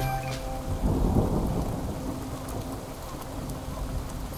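Thunderstorm sound effect: a low thunder rumble that swells about a second in and slowly dies away, over the hiss of rain.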